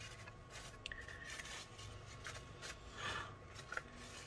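Faint rustling and rubbing of a folded paper towel, wet with rubbing alcohol, wiped over a laptop circuit board to clean off flux residue. The rubbing comes in small irregular strokes, a little stronger about three seconds in.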